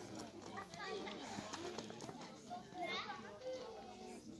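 Children's voices talking and calling out over one another, with a high call about three seconds in.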